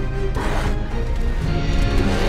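Film score with steady held tones. A short burst of noise, a crash-like sound effect, cuts across it about a third of a second in and lasts about half a second.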